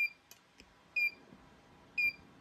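Heat press temperature controller beeping, short high-pitched beeps once a second: the mug press signalling that it has reached its set temperature.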